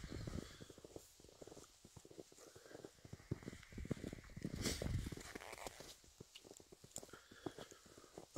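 Faint footsteps crunching through shallow snow, an irregular patter of steps a few times a second, with a brief louder rush of noise about halfway through.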